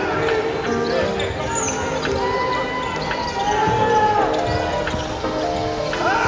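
Basketball game play on a hardwood gym court: a ball bouncing as it is dribbled and shoes squeaking, with music and voices from the gym around it.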